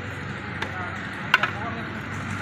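Two sharp metal knocks, the second louder, as a long metal ladle strikes a large metal cooking pot of rice.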